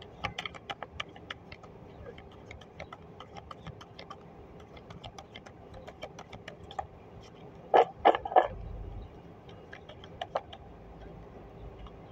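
Tarot deck being shuffled by hand: a quick, irregular run of small card clicks and slaps, with a couple of louder knocks about eight seconds in.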